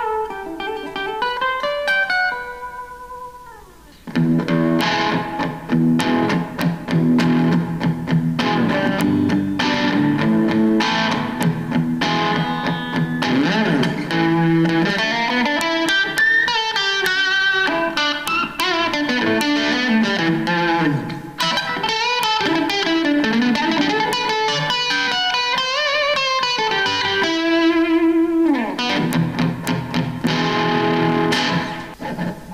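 2015 Anheuser-Busch Budweiser bowtie electric guitar with its single humbucking pickup, played through an amp: a few clean picked notes fading out, a short pause about four seconds in, then a denser, driven passage of riffs and lead lines with string bends.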